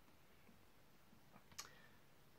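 Near silence: room tone, with one short, faint click about one and a half seconds in.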